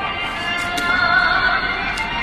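An upbeat song played from a loudspeaker on a drone flying overhead, its melody notes wavering in pitch.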